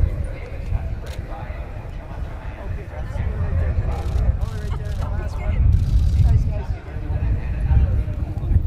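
Indistinct voices of a small group of people talking among themselves, heavier in the middle, over a steady low rumble.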